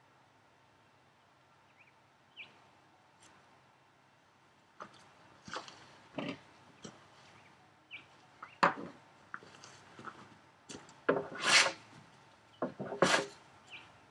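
Hand plane taking shavings off the face of a wooden workbench apron to flatten marked high spots: quiet at first, then short strokes from about five seconds in, giving way to longer, louder passes near the end.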